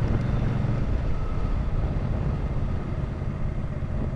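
Motorcycle engine and wind noise picked up by a helmet-mounted motovlog microphone while riding at low speed; a steady rumble that eases slightly in level.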